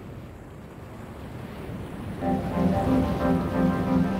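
A rushing sea-and-wind ambience swelling steadily, joined about halfway through by music of sustained, held chords with a low drone.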